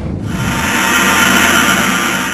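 A loud, steady rushing noise, a produced sound effect in a programme's title sequence, with some music under it.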